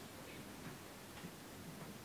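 A short pause in speech: only faint room tone, a low, even hiss.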